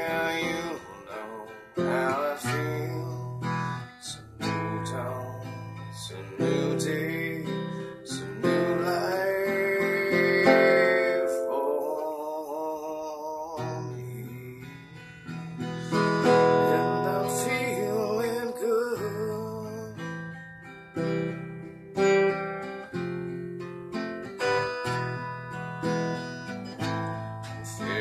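Acoustic guitar being strummed, with a man singing along.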